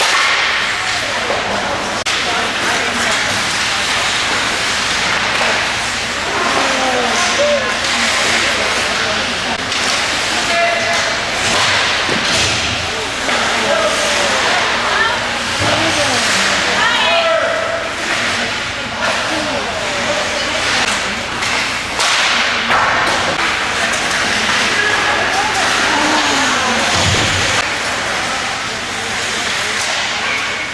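Ice hockey game sound in an arena: a steady scrape of skates on the ice, with sharp clacks of sticks and puck against sticks and boards throughout, and players and spectators calling out now and then.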